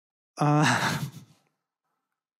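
A man's audible sigh, one breathy voiced exhalation about a second long.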